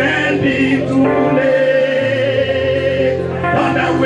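Gospel hymn sung by a male lead and a small group of singers with instrumental accompaniment, on long held notes; the bass note changes about halfway through.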